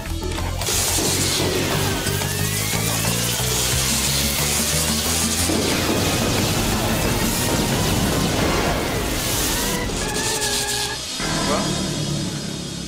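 Sci-fi sound effect of a body-switching machine being switched on: a loud, dense electrical hiss with sweeping tones that fall and rise near the start, over background music. It ends with a few held tones shortly before it cuts off.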